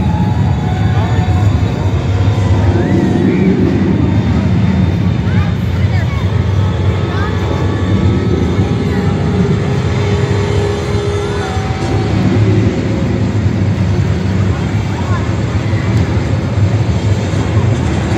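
Heavy engine of the Transaurus car-eating machine running steadily, echoing in a large arena hall, with crowd voices over it.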